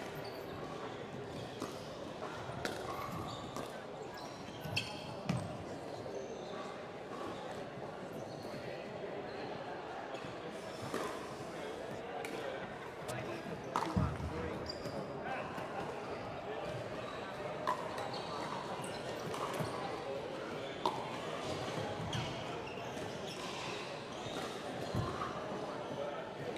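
Busy indoor sports hall: a steady murmur of distant voices with scattered sharp pops of pickleball paddles striking balls on neighbouring courts.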